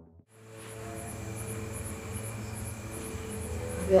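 Crickets chirping in an even, pulsing rhythm over a faint steady hum, starting a moment in after a brief drop to near silence.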